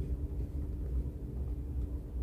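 A steady low hum under faint background noise, with no distinct clicks or other events.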